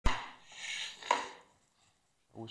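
A door being shut: a heavy knock right at the start, a brief rustle, then a second, sharper knock about a second in that rings briefly.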